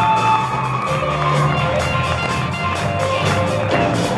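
Live rock band playing an instrumental passage: electric guitar, electric bass and drum kit, with the drums keeping a steady beat.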